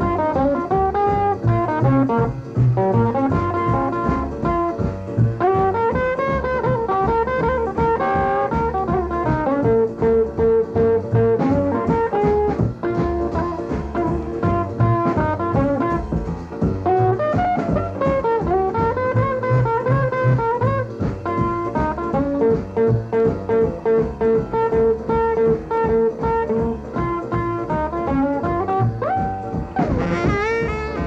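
Instrumental break in a jump-blues recording: lead guitar plays over the band's rhythm section, with a steady pulsing beat underneath. The guitar line keeps returning to quick repeated single notes.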